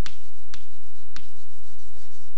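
Chalk writing on a chalkboard: three sharp chalk strokes, the first at the start and the others about half a second apart.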